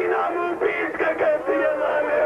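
A man's voice chanting a melodic, wailing lament with long held notes, amplified over a PA: the sung tragedy recitation (masaib) that closes a Shia majlis.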